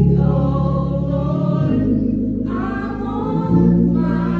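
A group of voices singing a gospel hymn over sustained low chords. The chord shifts about one and a half seconds in and again near the end.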